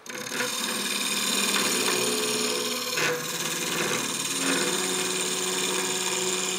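A curved-shaft hollowing tool cutting inside a wooden cylinder as it spins on a wood lathe: a steady rasping scrape of steel on wood, with the lathe's hum under it. There is a brief jolt in the cut about three seconds in.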